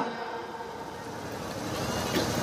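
A steady, fairly quiet outdoor background of low rumble and hiss, with no clear event standing out.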